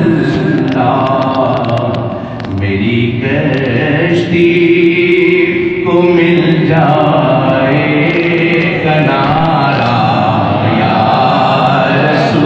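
Islamic devotional chanting: voices singing a salutation to the Prophet in long, drawn-out melodic lines.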